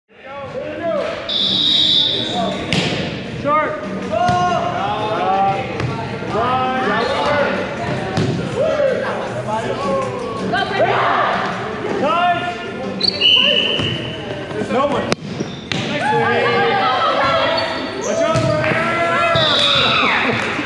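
Indoor volleyball being played in a gymnasium: players' voices calling and talking over one another, echoing in the large hall, with the ball being played and a sharp hit about fifteen seconds in. Three short, high, steady squeals cut through: at about a second and a half, at about thirteen seconds, and near the end.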